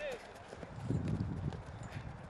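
A quick run of low, muffled thuds about halfway through, over open-air background noise.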